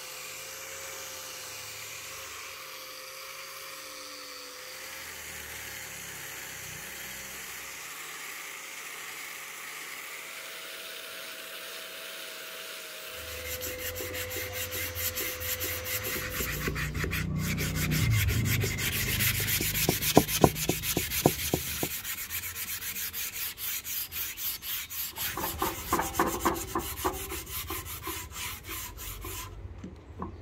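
Small angle grinder with a sanding pad running steadily with a thin whine as it sands a wooden axe handle. About halfway through this gives way to louder rhythmic rubbing strokes of sandpaper worked by hand along the wood.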